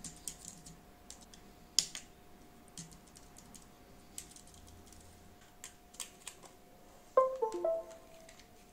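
Scissor-switch keys of a Perixx Peripad-202 numeric keypad clicking as numbers are typed in scattered presses. Near the end comes a short computer chime from the laptop, a few tones stepping downward.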